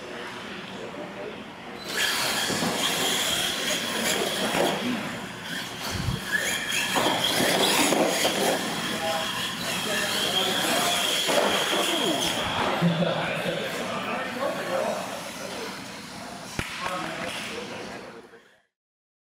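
Radio-controlled monster trucks racing across a hard indoor floor: their motors and tyres start up suddenly about two seconds in, with a steady high whine that carries on most of the way and fades near the end.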